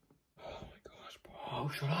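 A breathy, whispery voice sound, then a young man shouting "Shut up!" near the end.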